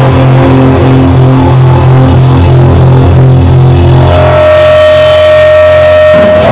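A live hardcore-thrash band with distorted electric guitar and bass, played very loud. Fast repeated low notes run for about four seconds, then a single high guitar note rings out steadily.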